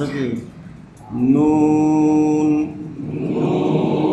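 A man reciting Quranic Arabic in a chanted style: after a short phrase, he holds one long steady vowel from about a second in for about a second and a half, then starts another drawn-out phrase near the end.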